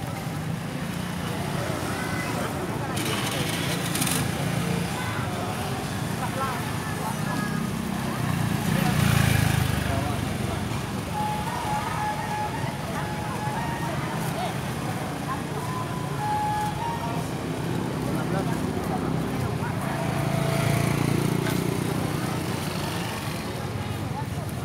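Open-air street market ambience: a steady murmur of people's voices with motorbikes passing, one swelling loudest about nine seconds in and another a few seconds before the end.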